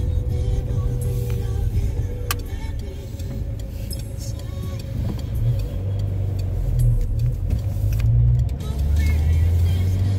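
Car engine and road noise heard from inside the cabin while driving slowly. The engine note grows louder and shifts as the car pulls away, about halfway through.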